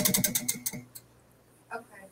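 Tabletop prize wheel coming to rest: its rim pegs click against the pointer, the ticks slowing and spacing out until the wheel stops about a second in.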